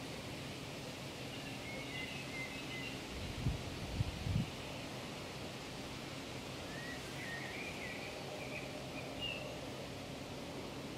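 Steady outdoor background noise in an open meadow, with faint short bird chirps twice and a few low thumps about three and a half to four and a half seconds in.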